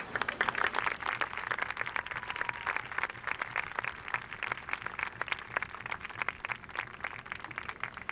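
Audience applause: a dense spatter of handclaps that thins out toward the end.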